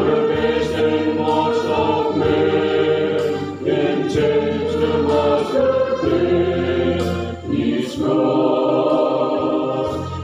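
Background music with a choir singing sustained, harmonised lines over a held bass.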